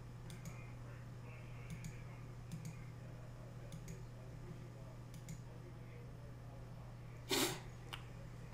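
Faint computer mouse clicks, several of them in quick press-and-release pairs, over a steady low electrical hum. About seven seconds in comes one short, louder puff of noise.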